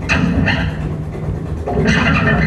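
Live instrumental fusion band playing: sharp drum and cymbal hits at the start, about half a second in and again near the end, over a steady low bass.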